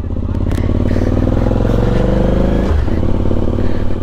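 Suzuki V-Strom 1050XT's V-twin engine pulling away from a standstill, its pitch rising as it accelerates, then dropping suddenly after nearly three seconds as it shifts up a gear before pulling on.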